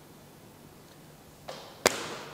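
Quiet room tone, then a short swish about a second and a half in and a single sharp smack just before the end.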